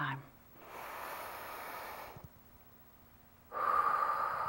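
A woman breathing deeply: an audible breath out through the mouth lasting about a second and a half, a short pause, then a deep breath in beginning near the end.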